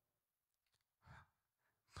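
Near silence, broken about a second in by one short breath or sigh from a man into a handheld microphone.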